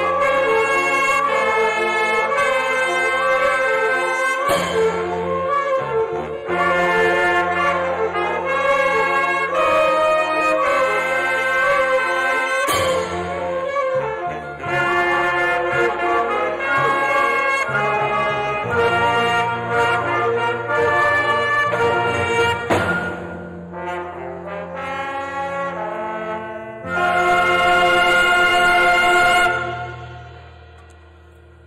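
A school concert band playing a medley of tunes the audience will recognize, brass to the fore, building to a loud held chord near the end that then dies away.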